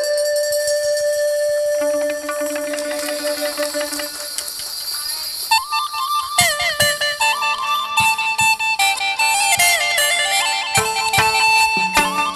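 Instrumental Vietnamese chầu văn ritual music: a wind instrument holds long notes for the first few seconds, then from about halfway a quicker, ornamented melody enters with regular percussion strikes.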